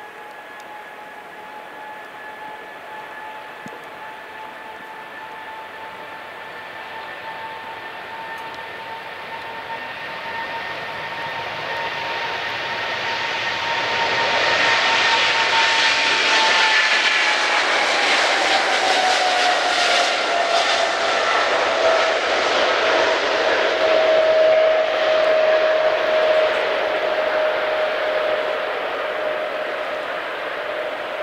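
Boeing 777-300ER's GE90-115B engines at takeoff power on a soaked runway: a steady whine over a jet roar that grows louder as the jet approaches and is loudest as it passes by mid-way. The whine then drops in pitch as it goes past and away.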